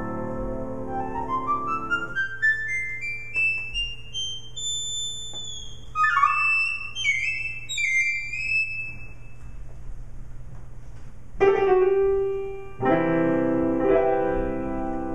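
Live jazz duo of acoustic piano and EVI (electronic valve instrument) improvising. A held chord gives way to an ascending run of notes climbing into the high register, then high melodic notes. Near the end come loud chords.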